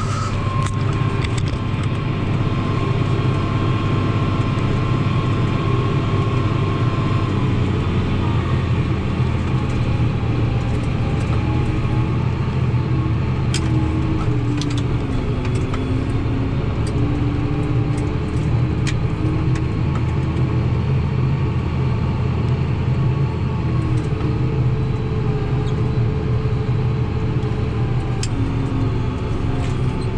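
Tractor engine running steadily, heard from inside the cab, with a few light clicks along the way.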